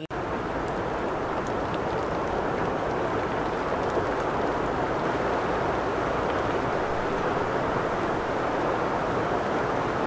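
Steady heavy rain falling, an even rushing hiss with no breaks.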